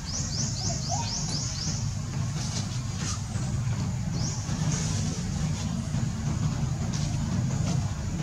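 Outdoor ambience: a steady low rumble with runs of quick, high, rising chirps, several in a row in the first two seconds and another about four seconds in, plus a few faint clicks.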